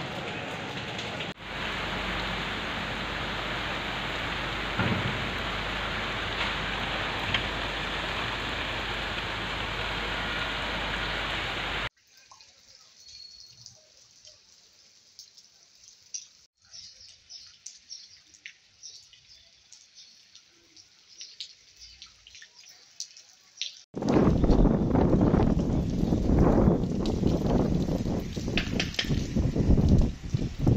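Heavy rain falling in a steady hiss. About twelve seconds in it cuts off sharply to a much quieter stretch of scattered faint drips and ticks. Near the end a loud, uneven rushing noise comes in.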